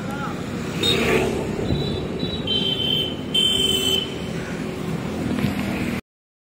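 Street traffic noise: a steady hum of passing vehicles, with a brief high-pitched tone a little past the middle.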